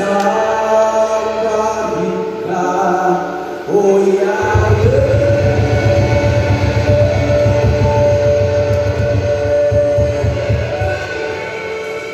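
Music with singing. About four seconds in a heavier low backing comes in under one long held sung note that lasts several seconds.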